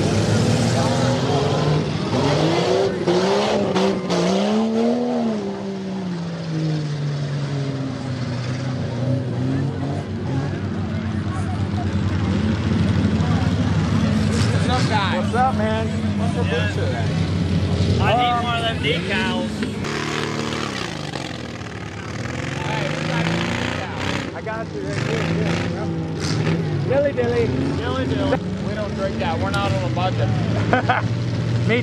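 Off-road truck engines revving up and falling back again and again, over the voices of people talking.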